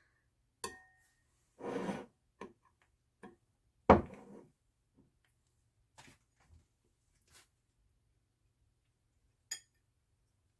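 A metal spoon clinking and scraping on a ceramic plate of ice cream, in a few separate clicks: one near the start rings briefly, a louder knock comes about four seconds in, and a sharp ringing clink comes near the end.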